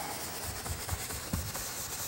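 Bristle paint brush stroking and scrubbing across a stretched canvas wet with liquid white, making a steady, scratchy swishing sound.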